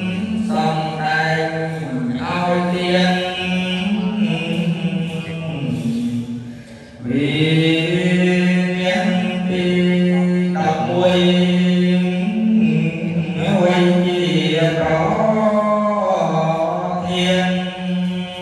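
A Buddhist monk chanting a text in a long, melodic monotone, one male voice holding steady pitches with small steps between them. The chant breaks off briefly about six and a half seconds in, then carries on.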